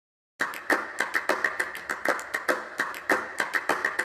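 Rhythmic percussion in a pop song's intro: a fast run of sharp clap-like hits, about five a second, starting after a brief silence.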